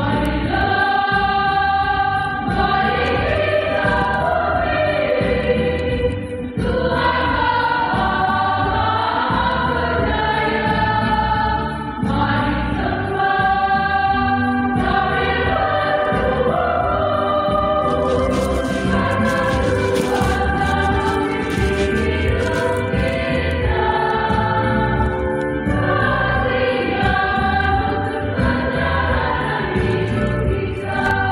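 A choir singing a hymn with electronic keyboard accompaniment, in phrases that pause briefly every few seconds.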